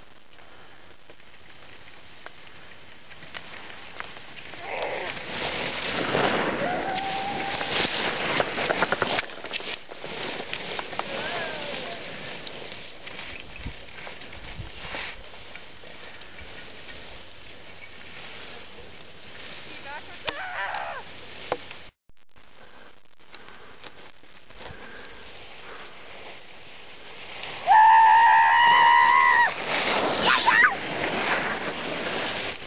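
Skis sliding and scraping over packed snow with wind rushing across the camera microphone, louder for a few seconds early on. Near the end comes a loud, high, held voice, a whoop.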